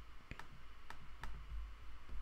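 Faint computer mouse clicks, a few single clicks spaced a few tenths of a second apart, over a low steady hiss.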